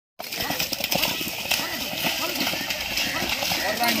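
Several men's voices calling and shouting over one another, with splashing footsteps and hoof strikes in wet mud.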